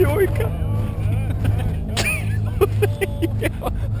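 People's voices talking and calling over a steady low engine hum, with a few short sharp clicks.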